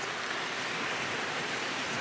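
Steady, even rushing background noise with no distinct events.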